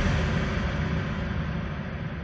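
A white-noise sweep effect in a breakbeat DJ mix, with the beat gone: a dense, rumbling noise wash that fades steadily as its highs are progressively filtered away.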